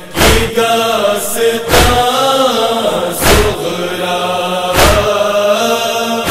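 Nauha, a Shia Muharram lament, chanted without instruments to a slow mournful melody, with a loud sharp chest-beat (matam) about every second and a half keeping time.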